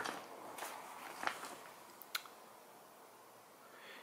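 Quiet room with faint handling noise: a soft rustle and a few small clicks, one about a second in and two close together near two seconds in, fading to near silence.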